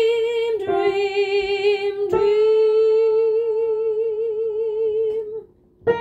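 A soprano voice singing long held notes with vibrato, changing note twice and holding the last for about three seconds before stopping. A piano chord is struck just before the end.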